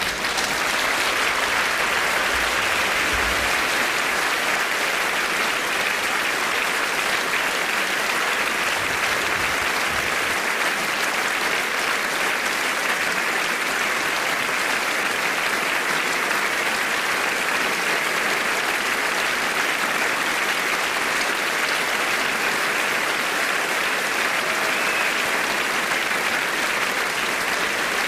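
Seated audience applauding: the clapping breaks out suddenly and keeps up at a steady level.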